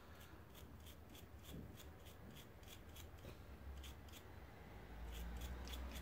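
Small brush scrubbing between the chambers of a Smith & Wesson revolver's stainless steel cylinder, brushing residue out of the gaps: a faint, irregular series of short scratchy strokes, a few a second.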